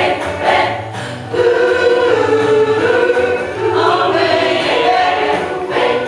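An amateur choir of mostly women's voices singing a pop song together in unison, moving into long held notes about a second and a half in.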